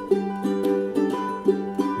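Two ukuleles strumming chords together in a steady rhythm.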